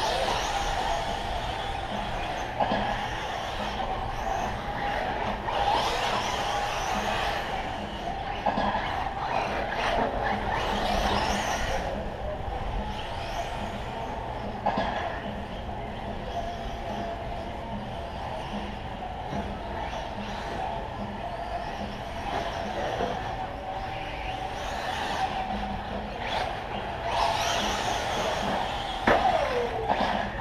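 Radio-controlled short course trucks racing on a dirt track: motor whine and tyres scrabbling on dirt, swelling several times as trucks pass close, with a passing whine that falls in pitch near the end.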